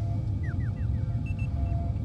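Electronic sound effects over a steady low hum: four quick falling chirps about halfway in, then two short higher beeps.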